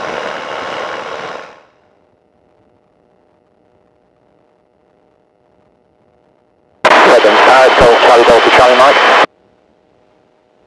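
Aircraft radio and intercom audio: a hiss that fades out about a second and a half in, then near silence with a faint steady hum, then about seven seconds in a loud, distorted burst of radio speech lasting about two and a half seconds that cuts in and off abruptly.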